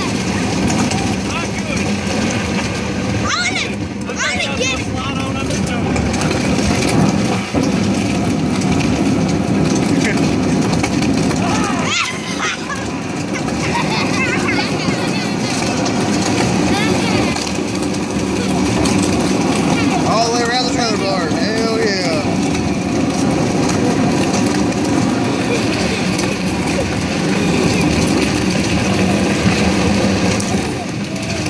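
Hard plastic toy boat hull scraping and rumbling over asphalt as it is towed along by a strap, a steady loud grinding noise.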